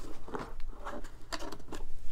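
A few soft clicks and rubs of a hand handling the steel wind-back tools in their plastic case, over a low steady hum.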